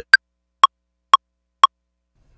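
Ableton Live's metronome counting in before recording: four clicks half a second apart (120 BPM), the first higher-pitched as the accented downbeat.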